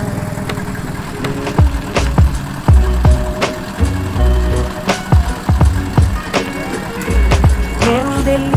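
Background music with a steady drum beat and deep bass notes that slide down in pitch.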